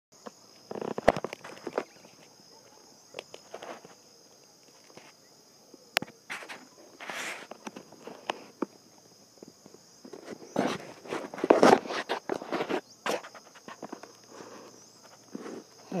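Footsteps crunching irregularly on a gravel and dirt track, loudest a little past the middle, over a steady high-pitched buzz of insects.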